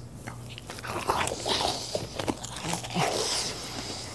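A man chewing a crunchy cookie close to a clip-on microphone, with irregular crunches and mouth clicks.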